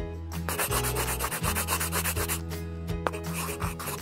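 Black felt-tip marker rubbing across paper in long drawing strokes with short breaks, over soft background music.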